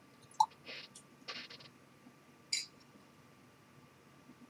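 Quiet handling of a tulip-shaped whisky tasting glass: a light clink about half a second in, then a few soft, brief rustling noises.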